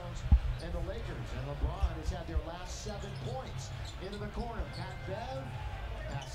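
A basketball being dribbled on a hardwood arena court, irregular thumps over a low, steady crowd noise.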